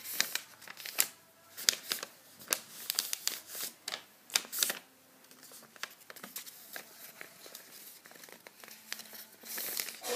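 A sheet of paper rustling and crackling as it is handled and folded into a paper plane. The sharp crackles come thick and fast for the first half, then thin out to occasional rustles.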